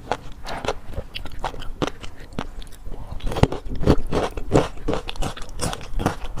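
Close-miked wet chewing of shrimp and fish roe: a rapid, irregular run of small clicks and pops that grows denser and louder about halfway through.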